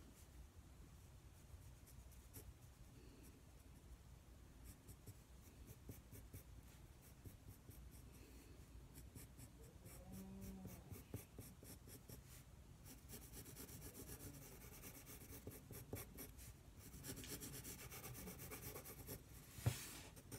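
Pencil lead scratching on paper in quick, faint shading strokes, which come thicker and faster in the second half. A soft knock near the end.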